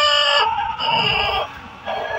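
Chickens calling: a drawn-out call at the start, another about a second in, and a third beginning near the end.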